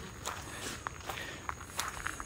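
Footsteps of someone walking on a dirt forest trail: a few soft, irregular steps about every half second.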